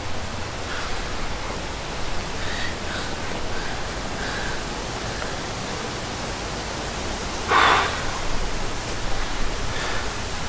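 Steady outdoor background noise, an even hiss with faint high chirps in the first half. About three-quarters of the way in there is one brief, louder rush of noise lasting about half a second.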